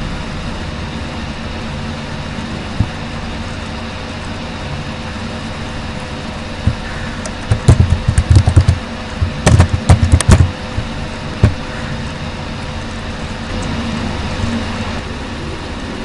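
Steady background hum and hiss of a room or computer fan, with a quick run of keyboard clicks from about seven and a half to ten and a half seconds in, as a password is typed.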